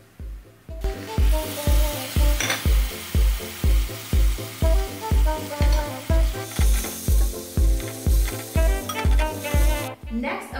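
Chopped tomatoes and tomato paste sizzling in a hot frying pan of softened onions and garlic, the sizzle starting about a second in. Background music with a steady beat plays throughout and is the loudest part.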